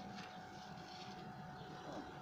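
Faint outdoor background noise with a low, steady hum and no distinct events.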